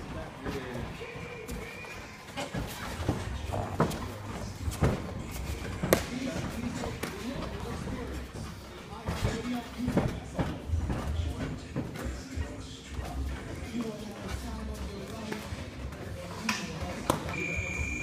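Gloved punches and kicks landing during kickboxing sparring: irregular thuds and smacks, with feet moving on the ring canvas. Near the end a short high electronic beep sounds, a round timer's signal.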